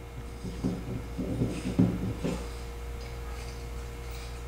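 Small metal clicks and scrapes as an MSR Pocket Rocket 2 burner is screwed onto the threaded valve of a gas fuel canister, a short cluster of them over the first two seconds or so.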